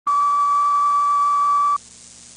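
A steady, loud, single-pitch test tone on a news videotape countdown leader, lasting about a second and three-quarters, then cutting off abruptly, leaving faint tape hiss.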